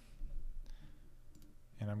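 Faint clicking of a computer mouse button, about two-thirds of a second in and again later, as a table column is deleted; speech starts near the end.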